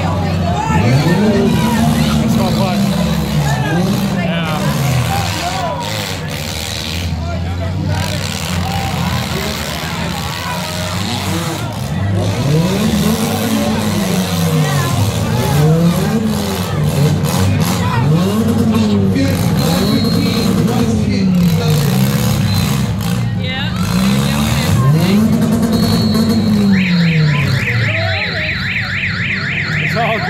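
Compact demolition-derby cars' engines revving up and down over and over as they drive and ram. About three seconds before the end a rapid warbling siren starts: the red-flag signal for all cars to stop.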